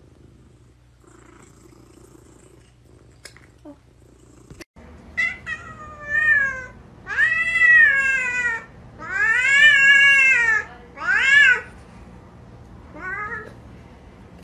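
A cat meowing loudly in a string of about six calls, starting about five seconds in. Each call rises and then falls in pitch, and the longest are drawn out for about a second and a half.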